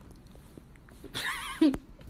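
A person's voice giving a brief, high, wavering whinny-like squeal about a second in, which drops to a short lower note and ends in a click.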